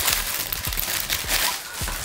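Thin plastic packaging bag crinkling and rustling as a flash bounce reflector is pulled out of it by hand.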